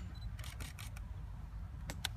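A run of sharp clicks, several in quick succession about half a second in and another near the end, over a steady low rumble of wind on the microphone.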